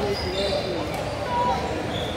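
Basketballs bouncing on a hard court amid background voices, with a brief high squeak about half a second in.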